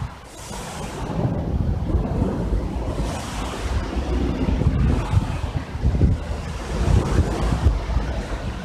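Wind buffeting the microphone in uneven gusts, a low rumbling noise that swells and drops, with brief hissing gusts through the grass and trees about half a second and three seconds in.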